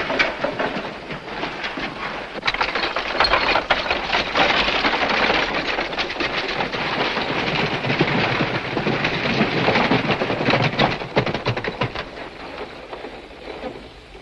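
Several horses galloping on a dirt track, a dense, irregular clatter of hoofbeats that fades near the end as the riders move off.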